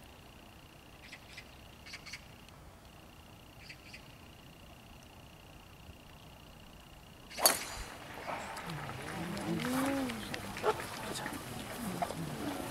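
Driver striking a golf ball off the tee: one sharp, loud crack about seven seconds in, after a quiet stretch with a faint steady high whine and a few soft clicks. Voices rise right after the shot.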